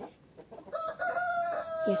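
A rooster crowing: one long, held call that begins under a second in and falls slightly in pitch at its end.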